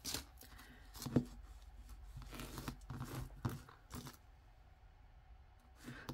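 Faint handling noise of a thin metal chain and pendant: light clicks and rustles in the first four seconds as a small magnet is touched against them, a magnet test for whether the piece is silver.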